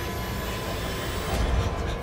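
A steady rushing noise with a faint high tone that rises in pitch over the first second or so, and a low rumble swelling near the end.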